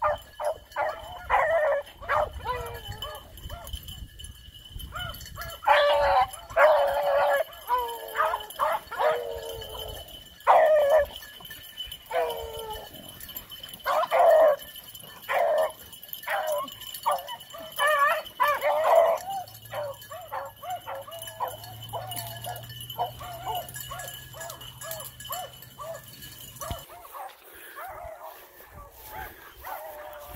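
A pack of beagles baying while running a rabbit through thick brush: many overlapping bays and barks in irregular bursts, some drawn out and falling in pitch.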